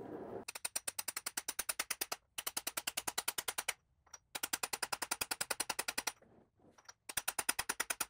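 Medium-weight hammer rapidly tapping a big socket to drive a Small Block Chevy's lower timing gear onto the crankshaft snout, in four quick runs of about ten taps a second. The taps go from a dead, dull sound to a sharp ping as the gear bottoms out on the crank, the sign it is fully seated.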